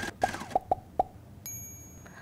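Animated title-card sound effects: four quick pitched plops in the first second, then about halfway through a bright high ding that rings on.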